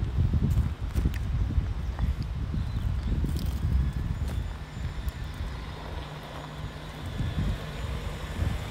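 Jeep Wrangler driving slowly toward the camera on a dirt track, its engine running low with tyres crackling over dirt and small stones; a steady engine hum comes through more plainly in the second half as it draws close.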